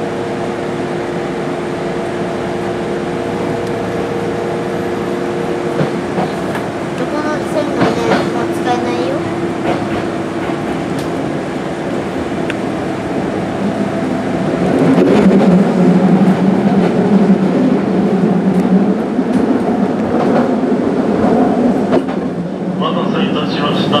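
Kintetsu electric commuter train pulling away and gathering speed, heard from the front cab end: a steady hum at first, then motor and wheel-on-rail running noise that grows clearly louder about two-thirds of the way through.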